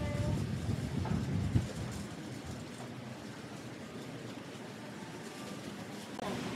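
Background noise of a covered market aisle. A low rumble runs for the first two seconds, with a sharp knock about one and a half seconds in, then the sound settles to a steady, even hubbub.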